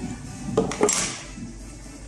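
Lid of a Samsung Galaxy S21 Ultra cardboard box being lifted off its base: a couple of light knocks about half a second in, then a short sliding scrape as the lid comes free.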